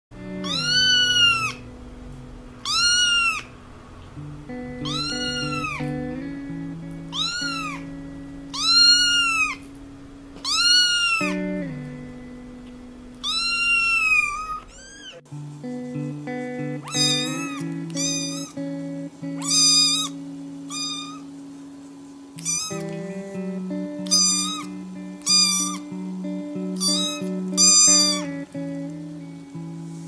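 Kittens meowing high and thin over background music with held notes. A ginger kitten meows about every two seconds; then, after a cut, a black kitten gives shorter, quicker meows, roughly one a second.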